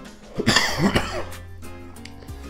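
A man coughs and clears his throat in a burst of about a second, shortly after the start, while exhaling a draw of shisha smoke. Background music plays underneath.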